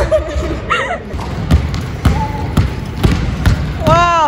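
Basketball dribbled on a hardwood gym floor, bouncing about twice a second, with brief exclamations from voices about a second in and near the end.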